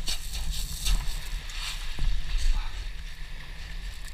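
Small waves washing up a pebble beach, with wind rumbling on the microphone.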